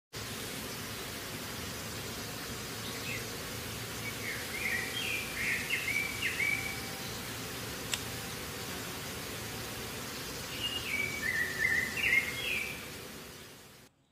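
A bird singing two runs of quick chirping notes over a steady outdoor hiss, the first starting about three seconds in and the second near ten seconds. There is a single sharp click about eight seconds in, and the sound fades out at the end.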